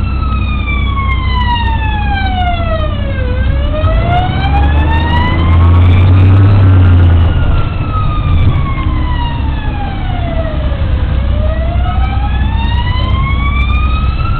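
Police car siren on a slow wail, its pitch sliding down and back up twice, about eight seconds per cycle. A deep rumble runs underneath, loudest around the middle.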